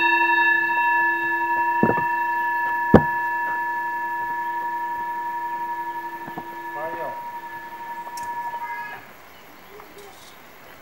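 Large Tibetan singing bowl ringing after a strike: a steady low tone with several higher overtones and a slow wavering beat, fading gradually and then stopping abruptly about nine seconds in. Two sharp knocks come at about two and three seconds, the second the loudest sound.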